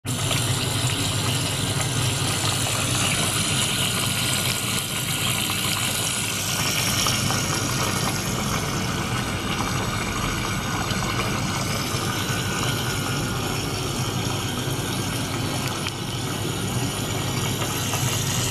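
Small circulation pump running steadily while water gushes and bubbles through tubes into a plastic tank, with a low hum under the noise of the water.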